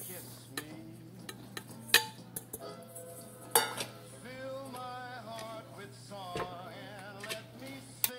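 A small metal bowl knocking against the rim of a stainless steel mixing bowl as sugar is tipped in, giving a few sharp metal clinks, the loudest about two seconds in. Faint background music plays underneath.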